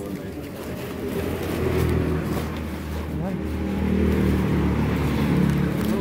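A vehicle engine running close by, a steady low hum that grows louder about a second and a half in and stays up.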